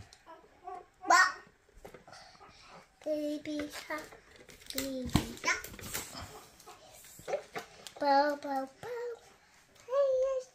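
A toddler babbling in short, high-pitched vocal bursts with pauses between them, no clear words, mixed with light clicks from handling the plastic parts.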